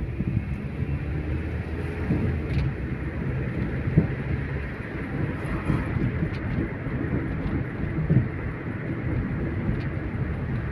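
Car driving, heard from inside the cabin: a steady engine hum and road rumble, with a few short knocks, the sharpest about four seconds in and again about eight seconds in.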